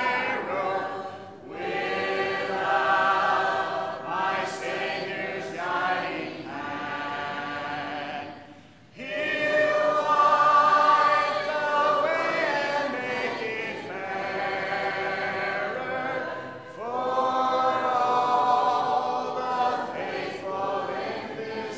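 Church congregation singing a hymn a cappella: many voices together with no instruments. The singing breaks briefly between phrases about a second in and again around eight seconds in.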